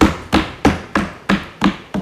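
Desk thumping: hands pounding on wooden desks in a steady rhythm of about three knocks a second, the parliamentary sign of approval.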